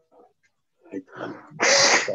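A few faint, short sounds, then near the end a loud, brief, breathy burst of noise through a video-call microphone, running straight into a person starting to speak.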